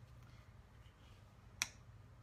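A single sharp click about one and a half seconds in, over a faint steady low hum of room tone.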